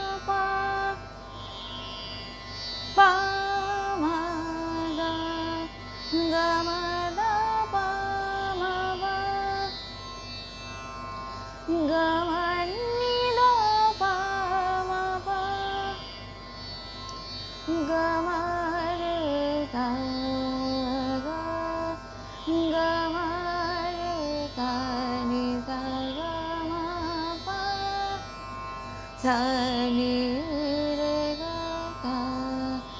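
A woman singing a thumri-style Hindustani classical passage that blends raga Hamir with Khamaj: long held notes joined by ornamented glides, over a steady drone.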